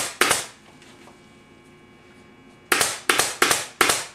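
Pneumatic upholstery staple gun firing staples through trim into a wooden chair frame: two quick shots at the start, then after a pause of about two seconds, four more shots about a third of a second apart.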